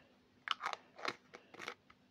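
Handling noise from a small clear plastic jar of soft-plastic larva baits being turned in the fingers: a quick, uneven run of about six short crackling clicks.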